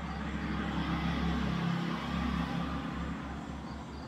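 A motor vehicle passing: a low rumble that builds up and fades away, with a faint insect chirping near the end.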